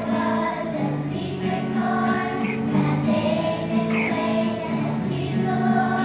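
Children's choir singing a song with sustained notes.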